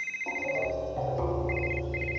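A telephone ringing with a rapid electronic trill: one ring, then two shorter ones close together. Background music with sustained notes comes in underneath shortly after the first ring starts.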